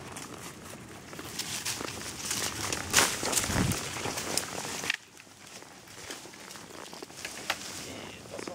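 Leaves and twigs rustling and crackling as a horse pushes through woodland undergrowth, with scattered sharp snaps. Busiest and loudest in the first five seconds, with one louder crunch about three seconds in, then quieter.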